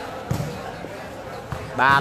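A single dull thud of a volleyball, about a third of a second in, then quieter court sound.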